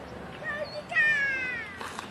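An animal's cry: a short note, then one drawn-out call about a second in that falls steadily in pitch.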